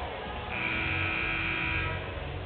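Gym scoreboard horn sounding once, a steady buzzy blare of about a second and a half that starts half a second in and cuts off shortly before the end.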